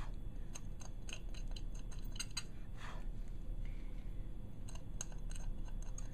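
Pointed clay cleanup tool scratching excess dried Glassline glass paint off a glass surface: short, irregular little scrapes and ticks.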